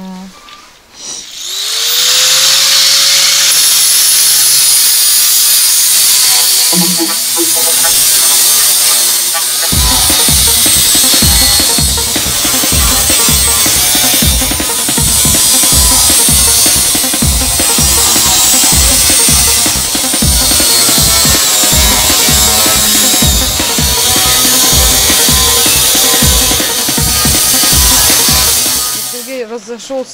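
Angle grinder spinning up about a second in, then running under load as it strips paint off sheet metal, with a continuous high whine. From about ten seconds in, music with a steady beat plays over it.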